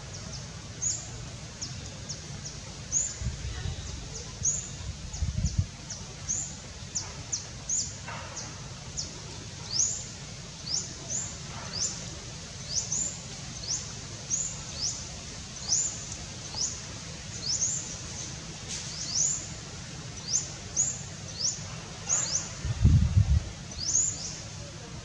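A bird's short, high chirps repeating steadily, about one to two a second, over a steady background hiss. Low rumbles come in a few seconds in and again near the end, the loudest just before the end.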